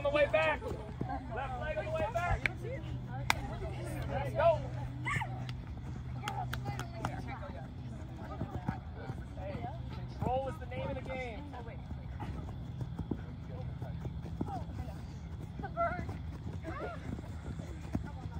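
Background chatter of girls' voices with scattered short thuds of feet hopping and landing on artificial turf, over a steady low hum.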